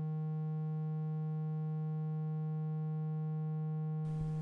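A steady electronic hum, one low tone with a row of overtones held without change, a synthesized sound effect that goes with a filling loading bar.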